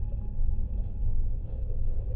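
A deep, steady rumble, with faint held tones of an ambient film score above it.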